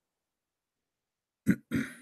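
Silence, then near the end two short throat noises from a man: a sharp first one and a longer, rougher second one.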